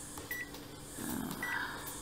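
Two short high beeps from a Konica Minolta bizhub C353 copier's touch panel as on-screen buttons are pressed, about a second apart, over a faint steady hum.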